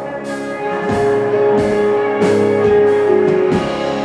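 Live rock band playing an instrumental passage: electric guitars over a steady drum-kit beat, with a long held note through the middle.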